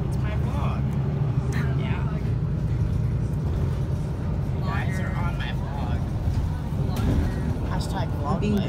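City bus running, heard from inside the passenger cabin as a steady low engine and road drone, with voices talking over it at times.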